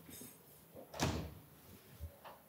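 Wooden door being opened: a faint latch rattle at the start, then one loud thump about a second in as the door swings.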